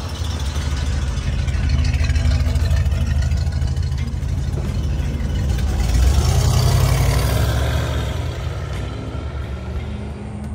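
A 1952 Lincoln Capri's 317 cubic-inch V8 running as the car drives past and away. The engine sound builds, is loudest about six seconds in as the car passes, then fades as it pulls off.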